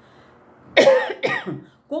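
A woman coughs, a sudden loud cough in two quick parts about three quarters of a second in, after a short silence.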